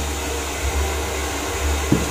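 Hand-held hair dryer running steadily while blow-drying a man's hair: a constant low motor hum under a rush of air.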